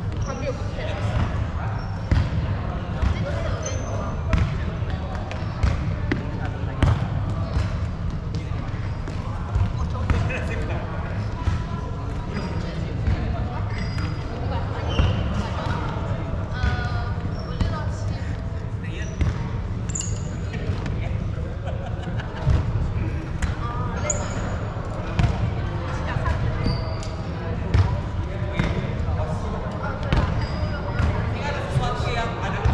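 Badminton hall ambience: steady background chatter of many people, with frequent sharp hits of rackets on shuttlecocks and short high squeaks of court shoes on the wooden floor.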